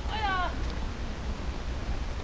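One short, high-pitched call that slides down in pitch, lasting under half a second.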